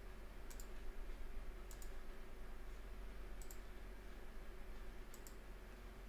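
Computer mouse buttons clicking: four clicks, each a quick double tick of press and release, spaced a second or two apart, over a faint steady low hum.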